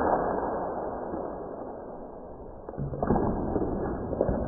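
Muffled rustle and crinkle of a plastic snack bag being torn open as its small crouton-like pieces spill out. A whooshing noise fades over the first two seconds, and crackling crinkles come back about three seconds in.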